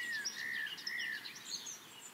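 Songbirds singing: several short chirps and whistled phrases overlapping, growing quieter near the end.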